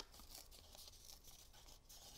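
Near silence, with a faint rustle of cardstock being bent by hand.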